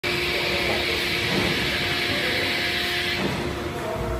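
Seydelmann K604 bowl cutter's hydraulic cover being lowered: a steady mechanical hum with a loud hiss over it. The hiss stops about three seconds in as the cover comes to rest, leaving the hum.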